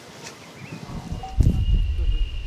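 Outdoor ambience: wind buffeting the microphone from about halfway through, with a steady high-pitched tone starting at the same time and a short chirp shortly before.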